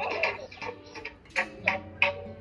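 A tabla struck irregularly by a small child, heard through a phone's speaker: a handful of uneven strikes with short ringing tones, the two loudest about a second and a half in.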